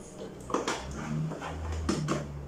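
Handling noise from a TDT set-top box being picked up and moved among cables on a TV stand: a few light knocks and clicks, with a short low hum in the middle.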